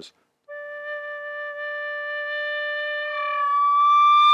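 Chrome-plated brass Lír tin whistle in D holding its low D steadily for about three seconds, then breaking up the octave to the high D, which is louder and held.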